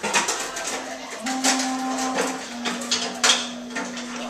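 Free-improvised music for clarinet, voice, drums and cello: one low note held steadily, stepping to a slightly lower pitch about two and a half seconds in, against scattered clicks and taps.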